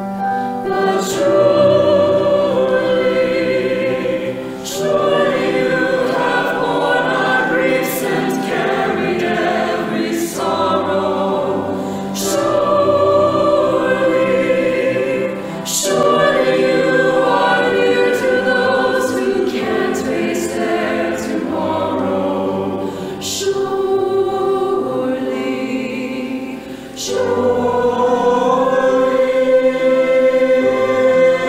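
Mixed church choir singing a slow anthem in phrases a few seconds long, with short breaths between them.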